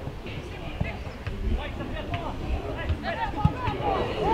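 Distant shouts and calls of football players and spectators across an open pitch, with a few dull thumps.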